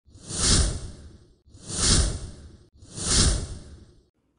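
A whoosh sound effect played three times in a row, each swell rising and fading over a little more than a second.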